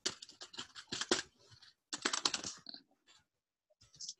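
Typing on a computer keyboard: two quick flurries of keystrokes, the second starting about two seconds in.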